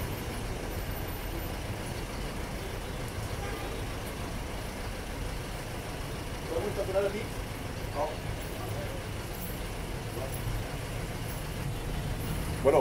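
Street traffic: a steady low engine rumble from road vehicles, with faint voices heard briefly a little past the middle.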